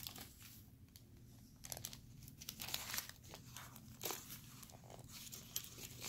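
Faint rustling and crinkling of tissue paper, with scattered light handling noises as a small wooden box is moved about on it.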